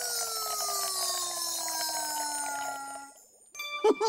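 Cartoon magic sound effect: a smooth whistle-like tone sliding steadily downward with a sparkly high shimmer over it, marking a glass of milk draining away by magic. It stops suddenly a little after three seconds in, and a new sound begins just before the end.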